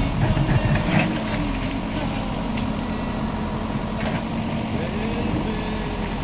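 JCB 3DX backhoe loader's four-cylinder diesel engine idling steadily.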